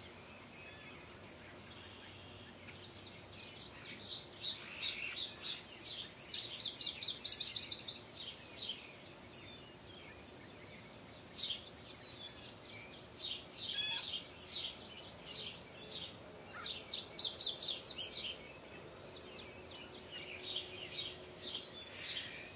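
Woodland ambience: a steady, high insect drone underneath, with birds calling in several bouts of quick repeated chirps.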